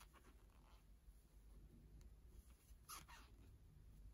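Near silence with faint rustling of yarn being worked with a crochet hook, and one brief, slightly louder rustle about three seconds in.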